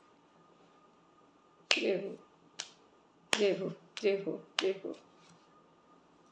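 A woman's voice making five short, abrupt sounds, spread over about three seconds starting about two seconds in.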